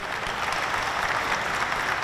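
An audience of many people applauding in a large chamber: clapping that starts at the beginning and keeps up steadily.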